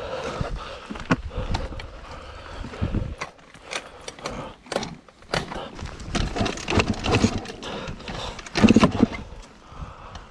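A stopped dirt bike being handled with its engine off: scattered clicks, scrapes and knocks of metal parts, with crunching of dry leaves underfoot, and a louder rough burst near the end.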